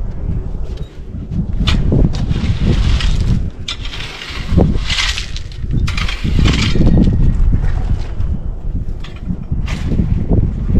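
A rake scraping and dragging through loose crushed rock in irregular strokes every second or two, over a low wind rumble on the microphone.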